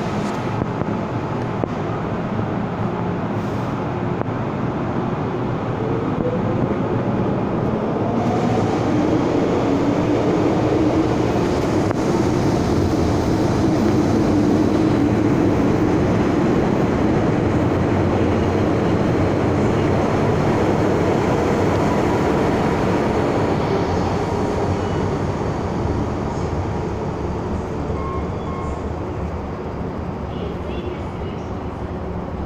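MTR M-Train electric multiple unit pulling out of the platform: a rising whine from the traction motors as it accelerates, over the rumble of wheels on the rails. The sound swells to its loudest midway and fades as the last cars leave.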